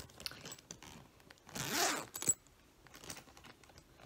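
Zipper on a fabric travel bag being pulled open, one longer zip about a second and a half in, among fainter rustling and with a sharp click just after.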